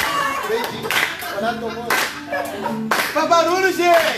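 A group clapping along in a steady beat, about one clap a second, over acoustic guitar music and voices singing.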